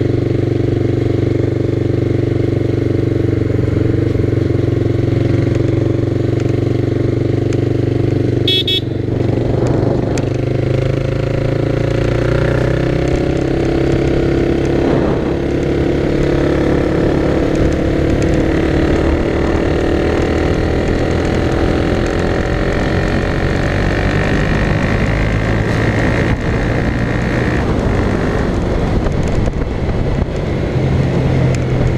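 Honda CB 300R's single-cylinder engine running steadily at road speed, heard from the rider's seat. The engine note dips briefly about nine seconds in, then wavers up and down in pitch.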